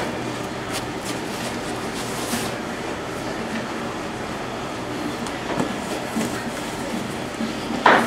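Steady room noise with light rustling and a few soft knocks as cardboard pizza boxes are handled and slid into nylon insulated delivery bags.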